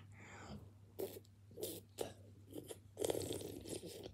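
Faint crunching and chewing of a frozen ice lolly being bitten: a few separate crunches, then a busier run of them near the end.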